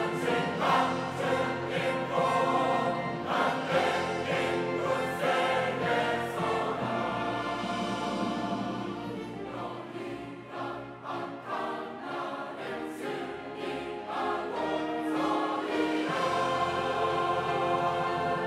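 Large mixed church choir singing an anthem in Korean. It is softer through the middle and swells louder again near the end.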